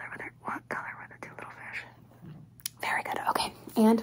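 A woman whispering softly, then speaking aloud near the end.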